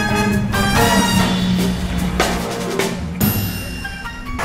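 Background music with a drum kit beat under sustained instrumental tones.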